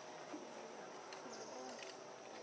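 Faint outdoor background: a steady high-pitched insect drone with faint distant voices.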